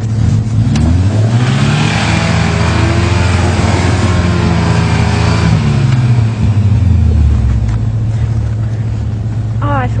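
Toyota 4x4 pickup's engine revving up hard under load as it strains to climb out of a snowy pit. It rises over about two seconds, is held high for several seconds, then drops back about six to seven seconds in.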